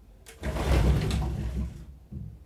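A low rumbling, rushing noise swells up about half a second in and dies away shortly before the end.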